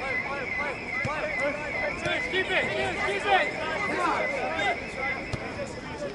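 Many voices shouting and calling over one another at a soccer match in play, with a steady high-pitched tone underneath that stops near the end.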